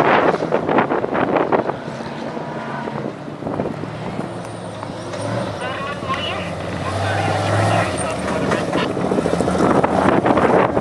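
Off-road desert race trucks passing on a sand course: the first truck's engine is loud at the start as it drives off and fades away, then a second truck's engine grows louder near the end as it comes through the sand. Spectators' voices can be heard in the quieter middle.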